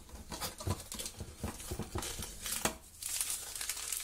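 Paper sugar sachets crinkling and rustling as a handful is pulled out of a metal cooking pot, with light taps of handling; the crinkling is densest near the end.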